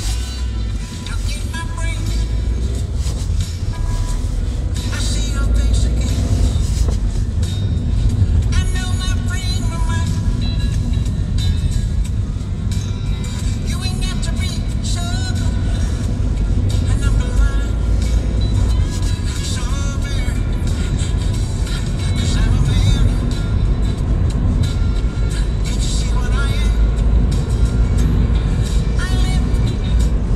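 Steady low rumble of a car's engine and tyres heard from inside the cabin on a wet country lane, with music that has a voice in it playing over it.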